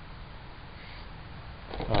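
Faint steady background noise with a low rumble and no distinct event; a man's voice starts near the end.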